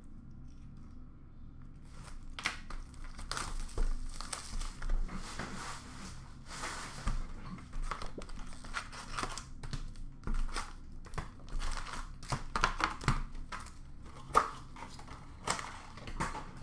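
Plastic wrap crinkling and tearing as a sealed box of Upper Deck Extended Series hockey card packs is opened by hand, with scattered clicks and scrapes of cardboard as the packs are taken out. It starts after a couple of quiet seconds and comes in irregular bursts.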